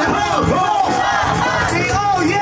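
Live hip-hop performance: a rapper's amplified voice shouting into a microphone over a loud backing track, with the crowd shouting along.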